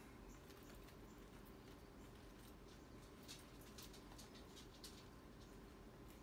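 Near silence with faint, scattered light rustles and clicks: dried cayenne peppers and cotton cord being handled as they are strung.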